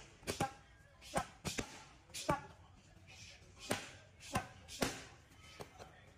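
Boxing gloves striking leather focus mitts on pad-work: about ten sharp smacks in singles and quick pairs, irregularly spaced.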